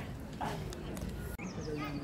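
Outdoor garden ambience: visitors' voices talking and a few light clicks or knocks. The sound drops out suddenly and briefly about one and a half seconds in.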